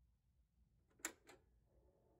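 Faint vinyl surface noise from a spinning 45 rpm single's lead-in groove: a low rumble with a sharp pop about a second in and a smaller click just after it.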